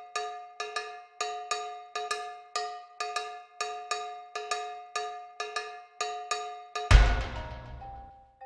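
Background music track: a bell-like struck note repeated in a quick, uneven rhythm, each strike dying away. About seven seconds in, a louder hit comes in with bass.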